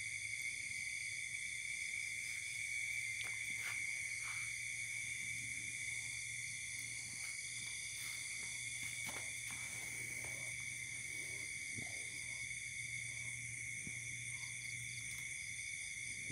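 A steady night chorus of insects, with crickets trilling in several constant high pitches. A few faint clicks and rustles come and go.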